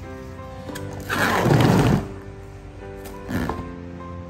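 Plastic cling film crinkling as it is pulled from its box and stretched over a steel bowl: one loud rustle about a second in and a shorter one near three seconds. Background music plays throughout.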